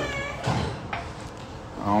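A child's high-pitched voice and a couple of short knocks, with a man starting to speak near the end.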